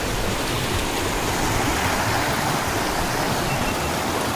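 Shallow, fast river rushing over rocks and boulders: a steady rush of white water.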